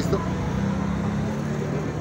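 Vehicle engine idling with a steady low hum that fades near the end, over street traffic noise.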